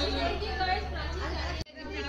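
Indistinct chatter of several people talking at once. It drops out for an instant near the end.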